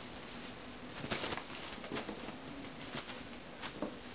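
A kitten pouncing and scampering on carpet after a feather wand toy: a few soft thumps and rustles, the loudest about a second in and another just before the end, over a faint steady hum.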